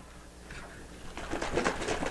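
A plastic jug of liquid nutrient concentrate being lifted and tipped. After a quiet first second, the liquid inside sloshes and glugs in a quick run of small sounds.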